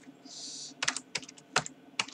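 Typing on a computer keyboard: a quick run of key clicks about a second in, after a short soft hiss.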